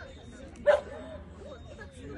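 A dog barks once, short and loud, about two-thirds of a second in, over the background talk of people.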